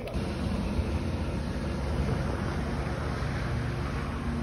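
Small propeller plane's engines running steadily on an airstrip, a continuous low drone mixed with rushing noise.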